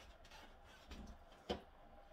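Soft knocks and one sharp click about one and a half seconds in, as a plastic creamer bottle is lifted off a shelf of an open refrigerator.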